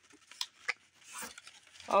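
Crumpled packing paper crackling in short rustles, with a few light taps, as it is lifted out of a cardboard box.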